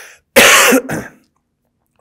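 A man coughs into his hand: a short intake of breath, then one loud cough with a brief second push right after it.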